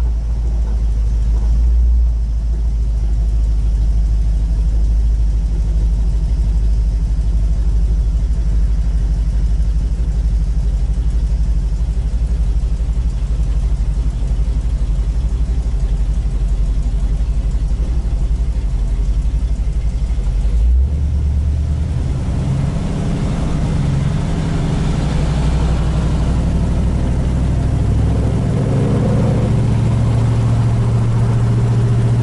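1967 Chevrolet Nova's engine heard from inside the cabin while driving in traffic: a steady low rumble, then about two-thirds of the way through the note changes suddenly and rises in steps near the end as the car gets moving again.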